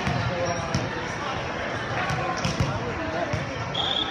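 A volleyball bounced a few times on a hardwood gym floor by the server before his serve, each bounce a sharp slap, with players' voices talking in the background.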